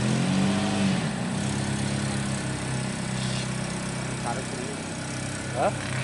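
A lowered Volkswagen Saveiro pickup's engine running at low revs as the car moves off slowly: a steady low hum with a short rise and fall in pitch at the start.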